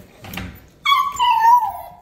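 A puppy whining once: a high whine about a second long, sliding down in pitch, starting a little before halfway.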